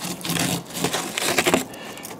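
Soft, irregular crunching and scraping of snow and ice being pushed by hand along a truck door's window ledge, mixed with camera handling noise.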